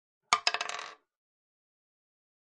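A brief clatter of small hard objects, a few quick clinks with a ringing tail lasting about half a second and starting about a third of a second in.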